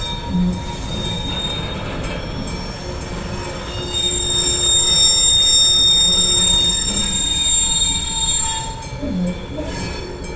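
Freight train of covered hopper wagons rolling past, wheels rumbling on the rails. From about four seconds in, a high, steady squeal from the wheels rises over the rumble, then fades near the end.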